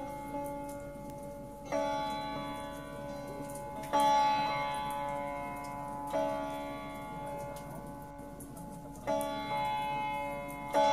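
Slow Indian sitar meditation music: single plucked notes ring out and die away, a new stroke about every two to three seconds. The loudest comes near the middle.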